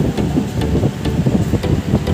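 Loud, steady rumbling wind noise buffeting the phone's microphone, with frequent small crackles through it.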